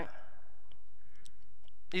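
A man's voice ends a sentence, then a pause holding a few faint, scattered small clicks, and the voice starts again near the end.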